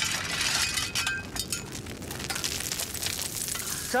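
Small landslide of loose schist gravel and stones sliding down a slope after being knocked loose by a shovel: a dense clattering rattle of small stones, loudest in the first second.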